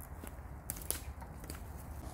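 Footsteps on a woodland floor of dry leaves and twigs: a few faint, irregular crackles and snaps as a man walks off.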